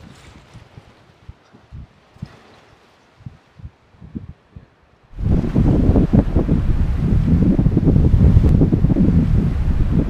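Wind buffeting the microphone at the edge of the sea. It comes in light low gusts at first, then about five seconds in turns suddenly loud and steady.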